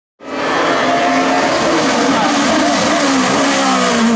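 Race car engine running hard at high revs, cutting in suddenly right at the start; its pitch wavers and slides slowly down.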